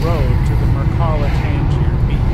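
Steady low rumble of a car driving on a city road, heard from inside the cabin, with a narrating voice over it.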